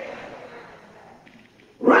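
A man's voice in a large, echoing hall: a drawn-out word fading into reverberation, a short quiet pause, then speech starting again near the end.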